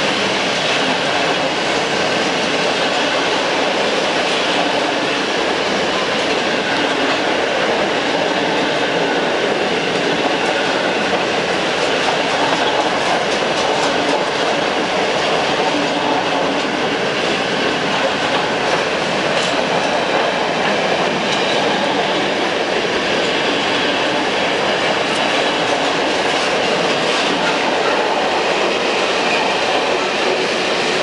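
Container flat wagons of a long freight train rolling past at speed: a steady, loud rolling rumble and rattle of steel wheels on the rails, with scattered clicks.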